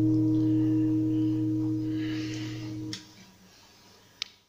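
The final chord on an acoustic guitar rings out and slowly fades, then stops short with a faint click about three seconds in, leaving low room tone.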